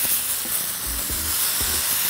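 Blackened tomatoes, red onions and garlic sizzling in hot oil in a pan: a steady, even hiss.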